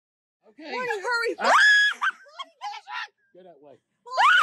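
A person's voice shrieking without words: a loud, high-pitched scream that rises and holds about one and a half seconds in, among shorter cries before and after it.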